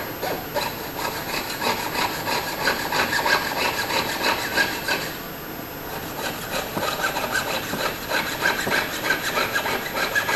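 Jeweller's saw cutting at the bench pin in quick, even back-and-forth strokes, pausing briefly about halfway through before sawing resumes.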